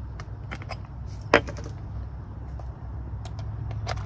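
Small plastic and metal clicks and clacks of a Tamron 20 mm lens being handled and fitted to a Sony A6000 mirrorless camera body. One sharp click a little over a second in is the loudest, with lighter clicks near the start and near the end, over a steady low rumble.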